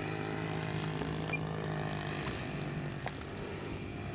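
Saito 100 four-stroke glow engine of a large radio-controlled J3 Cub model plane running steadily in flight, a continuous propeller drone that slowly grows fainter.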